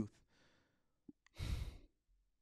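A man's short sigh, a breathy exhale of about half a second, just after a faint mouth click.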